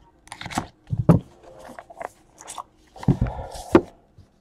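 2018 Panini Immaculate Baseball cardboard box being slid from its sleeve and opened by hand: scraping and rustling of cardboard in short bursts, with a few soft knocks, busiest about a second in and again near the end.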